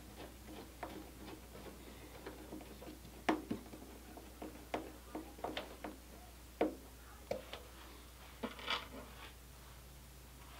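Small screwdriver driving servo mounting screws into the wooden servo mount of an RC plane wing: faint, irregular clicks and ticks, with a few sharper ones.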